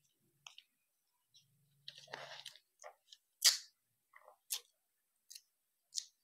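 Stiff joss paper being handled and creased by hand: a brief rustle about two seconds in, then a few sharp crackles and taps, the loudest about three and a half seconds in.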